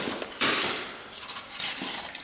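Plastic bag wrapping rustling and white foam packing blocks being handled in a cardboard box, in a few short bursts of rustle and light knocks.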